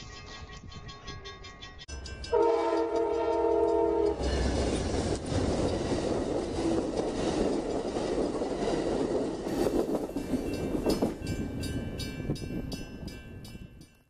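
Railroad crossing bell ringing, then an Amtrak bilevel passenger train sounds its horn for about two seconds, a chord of several tones. The train then passes close by with steady rumble and wheel noise, and the crossing bell is heard ringing again over it near the end.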